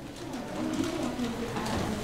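A man's low murmur under his breath, with the light rustle of thin Bible pages being turned as he searches for a verse.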